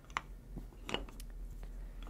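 Wooden building planks being set down and adjusted by hand, giving a few short, light wooden clicks.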